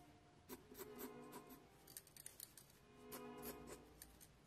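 Short scratching strokes of a graphite mechanical pencil on sketch paper, heard a few at a time, over faint background music.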